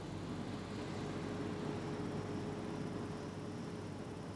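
Steady hiss of small gas burner jets heating the pipe that carries molten sodium. A faint steady hum comes in about a second in.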